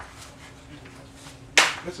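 A single sharp hammer blow on a splitting tool set in a bamboo culm, about one and a half seconds in.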